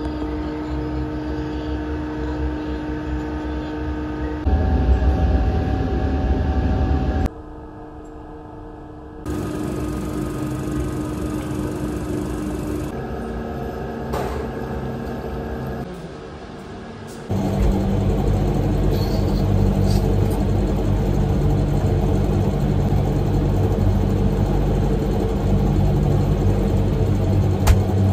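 Steady mechanical hum of laboratory ventilation and equipment, with held tones and a low rumble that change abruptly several times. The last ten seconds are the loudest and deepest.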